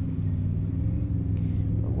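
Motorboat engines running with a steady low rumble.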